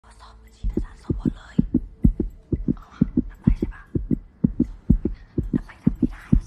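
Fast heartbeat sound effect: paired low thumps, about two beats a second, starting just over half a second in, a tension cue in a film soundtrack. Quiet voices sit underneath.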